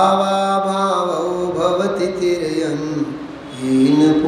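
A man chanting in a slow melody, holding long notes and sliding between them, with a short pause about three seconds in.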